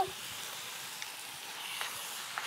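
A steady hiss with no clear pattern.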